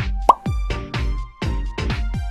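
Background electronic dance music with a steady beat of deep, falling bass kicks. About a quarter second in, a short rising blip stands out as the loudest sound.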